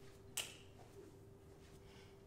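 Quiet room with a faint steady hum, and one short sharp scuff about half a second in as a foot moves on a yoga mat during mountain climbers.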